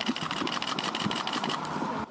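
Rapid, even mechanical clicking, about a dozen clicks a second, over street noise. The clicking fades out about a second and a half in.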